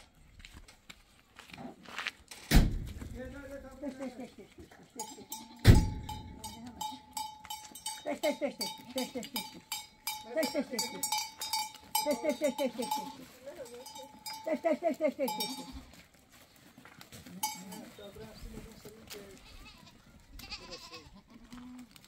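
A herd of goats arriving, bleating again and again in wavering calls, with bells on the animals clinking and ringing from about five seconds in. Two sharp knocks come before the bells start, one a few seconds in and one just before them.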